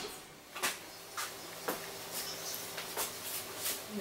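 Quiet room tone in a small office: a faint low steady hum with several soft, irregularly spaced clicks.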